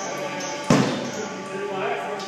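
Live band: a sustained electric guitar drone holds steady while a single loud drum hit lands about a third of the way in and rings out.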